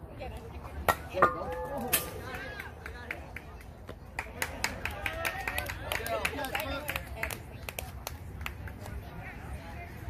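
A softball bat strikes the ball with a sharp crack about a second in, followed by players shouting and calling out across the field.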